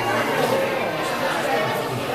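Background chatter of many overlapping voices, no words clear, continuing at an even level.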